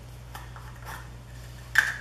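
A couple of faint plastic clicks from a camera lens being handled, then a single sharp clack near the end as a plastic lens cap is set down on the tabletop.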